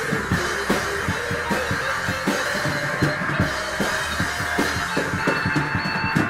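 Acid rock band playing: a drum kit keeps a steady beat of strokes a few times a second under held guitar notes.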